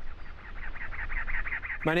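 A bird calling in a fast, even series of harsh notes, about eight a second, over a steady low rumble of outdoor ambience.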